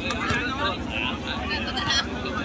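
Crowd of spectators talking and calling out all at once, a dense babble of many voices, with a sharp knock near the end as the loudest moment.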